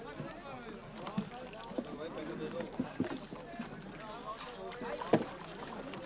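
Voices talking among wooden market boats packed together on the lake, with scattered knocks of wood from the boats and paddles, the loudest a sharp knock about five seconds in.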